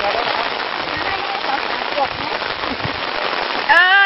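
Hoes chopping and scraping in dry earth under a steady noisy hiss, with faint scattered voices. Near the end a man's loud, drawn-out chanting cry begins, rising and falling in pitch.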